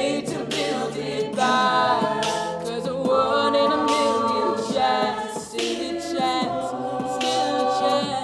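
A cappella vocal group of men and women singing in close harmony, holding long chords that change every second or two, with no instruments.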